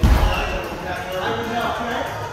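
A heavy low thump right at the start, then voices in a large, echoing hall with music in the background.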